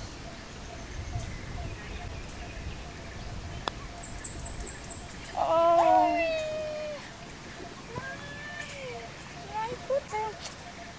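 A putter strikes a golf ball with a single light click, followed by a brief run of high chirps. As the putt rolls out comes a long, wordless, falling groan of a voice, with a shorter vocal sound about two seconds later.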